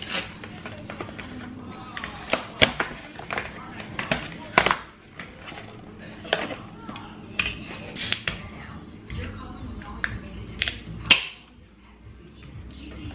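Scattered sharp clicks, taps and crinkly rustles of packaging and a cup being handled on a kitchen counter, as a wrapper is torn off a drinking straw.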